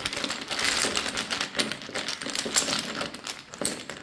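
Runes and small charms clicking and rattling against each other inside a cloth drawstring rune bag as a hand rummages through them to draw one, with the rustle of the fabric. The clicks come quickly and unevenly, many per second.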